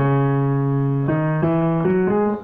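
Music of sustained chords on an electronic keyboard, the notes held steady rather than fading, with the chord changing about a second in and twice more near the end.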